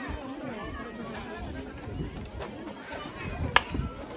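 Players and sideline spectators talking and calling out across an outdoor hockey pitch, with one sharp crack of a field hockey stick striking the ball about three and a half seconds in, the loudest sound.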